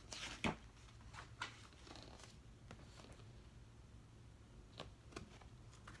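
Faint scattered rustles and a few soft clicks of a paperback picture book being handled and closed, over a low steady room hum.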